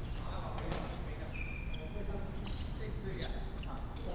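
Badminton rally on a wooden sports-hall court: a few sharp racket strikes on the shuttlecock, about a second in, near three seconds and again at the end, with short high squeaks of shoes on the hall floor in between.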